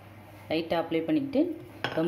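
A woman speaking from about half a second in, over a steady low hum, with a single sharp knock near the end.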